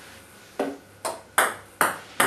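A table tennis serve: three sharp clicks of the celluloid ball striking bat and table. The first comes about half a second in, and the other two come close together near the end.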